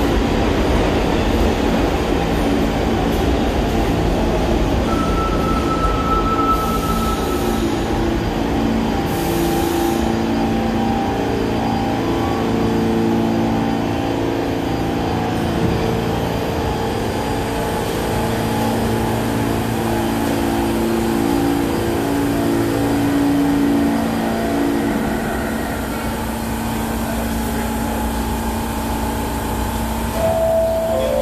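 New York City subway F train of R46 cars pulling into the station: a loud, steady rumble of wheels on rail, then a series of held whining tones at several pitches as it slows to a stop.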